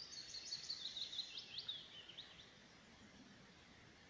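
Faint songbird song: one phrase of a dozen or so quick high notes that step gradually down in pitch over about two seconds.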